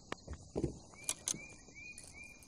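A few handling knocks and taps on a bass boat's deck as an angler deals with a freshly landed bass, over a steady chorus of crickets. From about a second in, a short chirp repeats a little more than twice a second.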